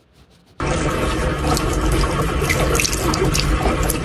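Water running from a tap into a sink, a steady rushing splash that starts suddenly about half a second in, as a cat drinks from the stream.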